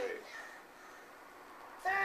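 A cat meowing: one falling meow trails off just after the start, and another begins near the end.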